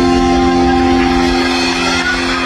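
Live band holding one sustained chord on amplified guitars and bass, ringing steadily, as at the close of a song.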